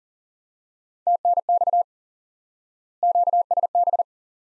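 Morse code sent at 40 words per minute as a single steady beep tone, keyed in two quick runs about two seconds apart: the abbreviations TNX and QSB repeated in code after being spoken.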